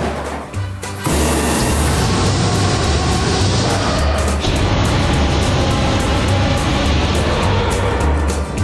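A homemade propane flamethrower firing a continuous flame jet, starting about a second in as a steady rushing hiss of burning gas. Background music with a pulsing bass beat plays under it.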